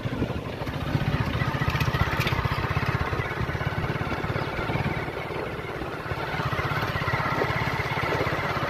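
Motorcycle engine running steadily while being ridden, with a fast, even beat from its firing.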